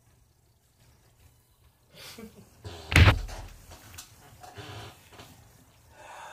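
Handling noise: rustling about two seconds in, then one loud thump about three seconds in, followed by a few lighter clicks.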